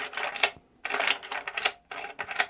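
Bolt of a Mossberg MVP LR bolt-action rifle rattling and clicking in its receiver as it is worked back and forth by hand: a run of irregular light clacks with two short pauses. The rattle is the bolt's loose play, which the reviewer finds rough and not refined.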